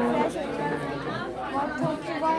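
Indistinct chatter: several voices talking at once in a busy room, none clear enough to make out.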